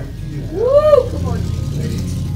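A man's voice lets out one drawn-out exclamation, rising and then falling in pitch about half a second in, over a steady low hum.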